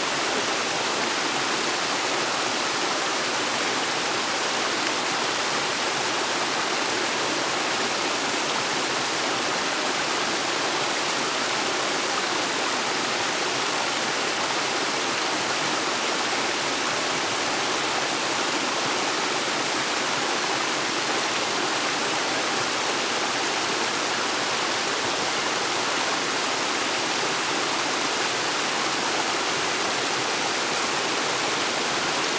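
Small waterfall spilling over rocks into a shallow pool: a steady rushing and splashing of water.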